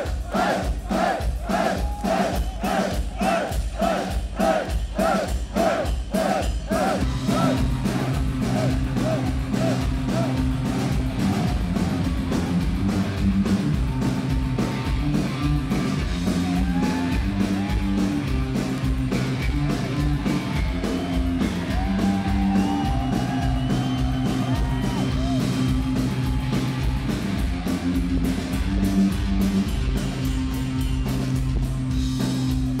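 A live rock band playing loud through a club PA: electric guitar, bass and drums with a steady beat, and singing over them. For the first several seconds a short figure repeats about twice a second, after which sustained chords carry on under the voice.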